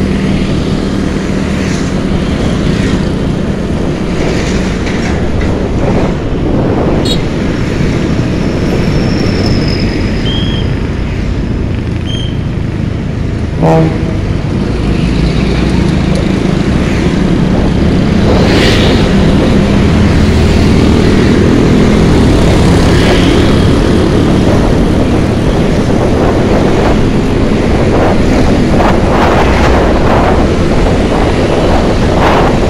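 Scooter ride recorded from the handlebars: the steady running of a Honda Beat scooter and passing traffic, mixed with wind on the microphone, getting louder in the second half. A short horn beep sounds about halfway through.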